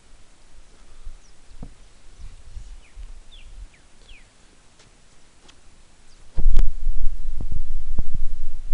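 Faint, short chirps of small birds, then about six seconds in a loud low rumble with irregular thumps sets in on the handheld camera's microphone.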